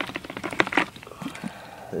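Handling noise: a quick run of small clicks and rustles through the first second, then quieter.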